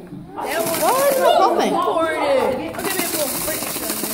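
Several excited voices talking and calling over each other, with a plastic zip bag of dry ice rustling with a hiss-like crinkle as it is handled.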